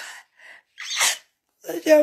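A person sneezing once, a short sharp burst of breath about a second in, with speech following near the end.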